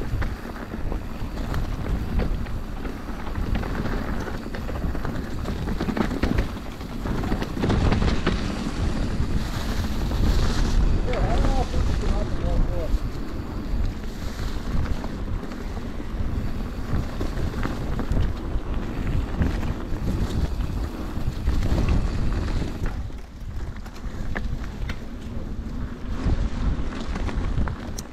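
Wind buffeting the microphone over the continuous rumble and rattle of an Orbea Occam mountain bike rolling down a leaf-covered dirt singletrack.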